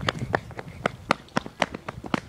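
Quick, even running footsteps, about four steps a second.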